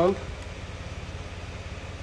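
A steady low mechanical hum with no change in pitch or level, under the last word of speech at the start.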